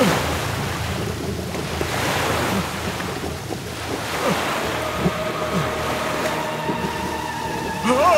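Heavy rushing, churning floodwater pouring into and swirling around a metal ship compartment, a steady loud wash of water noise.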